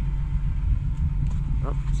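A motor vehicle engine idling: a steady low rumble with an even hum that does not change.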